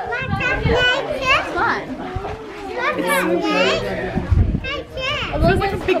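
A group of children and adults talking and exclaiming over one another, with high excited children's voices.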